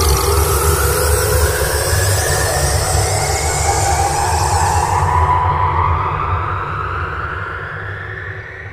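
Cinematic logo-reveal sound effect: a deep steady rumble under slowly rising tones and a hissing wash. The hiss dies away about five seconds in, and the whole sound fades toward the end.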